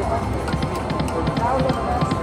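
88 Fortunes video slot machine spinning its reels, its electronic music and a run of short ticks from the reels, over a constant murmur of casino voices.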